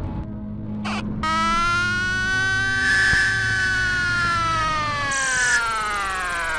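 Live improvised electronic music from turntables, electronics and modular synthesizer: a brief burst of noise, then a buzzy pitched tone with many overtones that rises slightly and slowly slides down in pitch, over a low steady hum.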